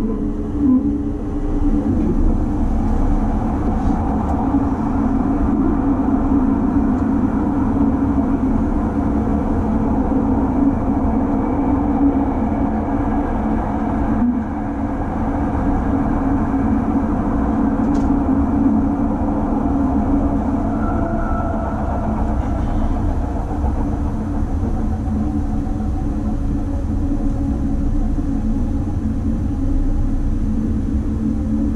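Cabin noise inside a JR East E257 series electric train running along the line: a steady rumble of the wheels on the rails and the running gear.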